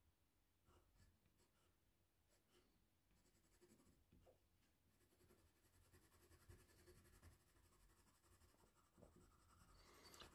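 Very faint scratching of an oil pastel drawing on paper, barely above silence, with a few soft ticks in the second half.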